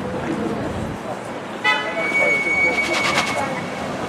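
City street traffic with a short car horn toot about one and a half seconds in. It is followed by a steady high electronic tone lasting nearly two seconds, with a quick run of rapid ticks near its end.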